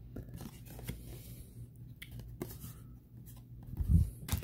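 Hands handling trading cards and plastic pack wrappers: scattered rustles and light taps, with a soft thump near the end.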